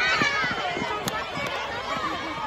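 Children shouting and cheering at a relay race, many voices at once, with the thud of runners' footsteps on the track as they pass close by.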